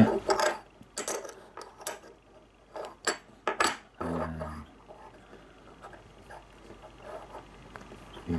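Silver bullion coins handled on a wooden table: a quick irregular run of sharp clicks and clinks over the first four seconds, then only faint light ticks.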